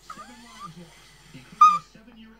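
Small Chihuahua-type dog whimpering with sliding whines, then giving one loud, short, high-pitched yip about one and a half seconds in.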